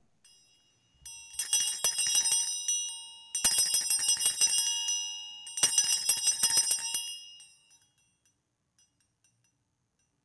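Altar bells shaken three times, each ring lasting about a second and a half with a jingling tone that fades away, marking the elevation of the chalice at the consecration of the Mass.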